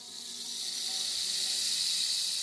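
A high, steady hissing noise that fades in over the first second and then holds, with faint low held tones beneath it.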